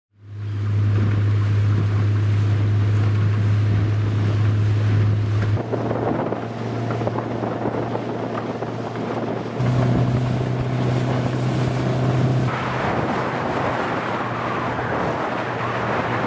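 A rigid inflatable boat's motor running under way, with water and wind rushing past. Its steady hum fades in at the start, drops in pitch about five and a half seconds in and rises again near ten seconds. From about twelve seconds the rush of water and wind grows louder.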